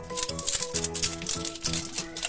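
Background music with held notes, over rattling and crinkling as a foil wrapper is peeled off a plastic toy capsule.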